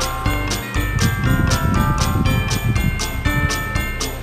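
Background music with jingle bells shaken on a steady beat, about four strikes a second, under a bell-like melody.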